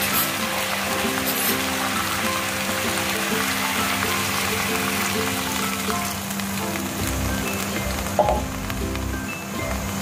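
Background music over the sizzle of shrimp and sliced bitter melon frying in a wok. About two-thirds of the way through, water is poured in and the sizzle dies down.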